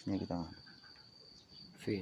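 A faint, steady, high-pitched trill of crickets in the background. Brief speech is heard at the start and again near the end.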